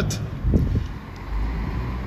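Low rumble of street traffic, with a city bus nearby, in a pause between spoken sentences; a brief louder sound comes about half a second in.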